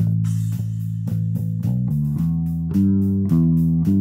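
Background music: a free-form bass line in A played on a bass guitar, a run of plucked notes that grows a little louder near the end.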